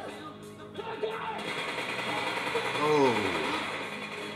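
Movie-trailer soundtrack playing: music under a voice, with a hissing rush of sound effects rising about a second and a half in and a voice falling in pitch near three seconds.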